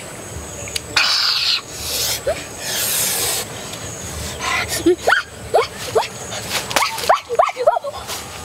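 Two brief bursts of rustling, then a run of about eight short, rising animal calls in quick succession in the second half.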